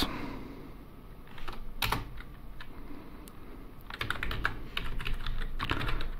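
Computer keyboard typing: a few keystrokes about two seconds in, then a quicker run of keystrokes over the last two seconds.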